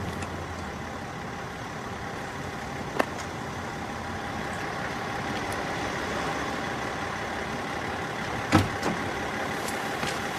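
Steady noise of a running motor vehicle or traffic, with a sharp click about three seconds in and a louder knock near the end.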